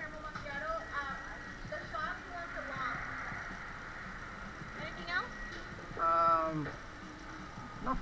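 Indistinct voices talking behind a service counter, with one loud, drawn-out vocal call about six seconds in whose pitch drops at the end.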